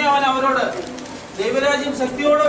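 A man's voice singing slowly in long, held notes into a microphone: one phrase at the start, a second beginning about one and a half seconds in.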